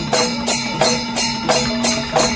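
Panchavadyam ensemble playing: hand-struck timila hourglass drums and maddalam barrel drums over ilathalam cymbals clashing in a steady, even rhythm.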